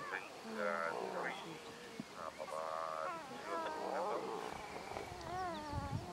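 Lion cubs mewing and squealing in a string of short, wavering calls as they jostle to suckle from the lioness, with a low rumble near the end.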